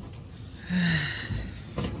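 A person's short breathy sigh, about a second in, followed by a soft thump.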